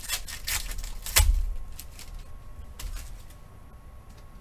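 Trading cards and their foil pack handled over a table: a quick run of sharp clicks and rustles in the first second, with a thump about a second in, then quieter handling.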